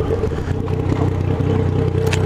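Yamaha MT-09's inline three-cylinder engine running at low, steady revs while the motorcycle rolls slowly through city traffic.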